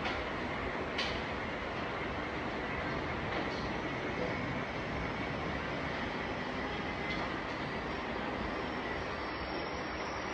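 Steady rumbling background noise with a faint hiss, and a single sharp click about a second in.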